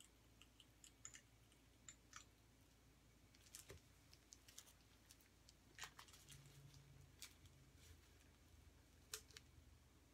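Near silence with a scattering of faint, short clicks and light taps from plastic squeeze bottles of acrylic paint being handled, squeezed and set down on the table.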